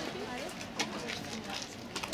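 Faint background voices and chatter of people around the track, with a few light clicks.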